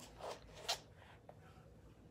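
Faint handling sounds of a cardboard makeup palette book and its loose plastic sheet: a couple of soft rustles or clicks in the first second, then quiet.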